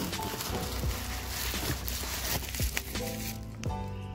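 Plastic bubble wrap crinkling and crackling as it is handled and pulled back, densest in the first two seconds or so, over background music that comes forward again near the end.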